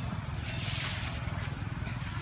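Wind buffeting the microphone as a steady low rumble, with a brief rising and falling hiss about half a second to a second in.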